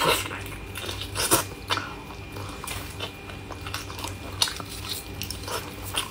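Close-up chewing and wet mouth sounds of someone eating meat off the bone, with scattered sharp smacks and tearing. The loudest come right at the start and about a second and a half in.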